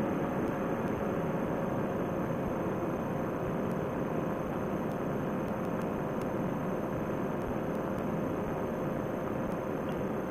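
Fresh Breeze Monster paramotor engine and propeller running steadily under climb power in flight. A steady hum sits over an even wash of engine and air noise, with no change in pitch.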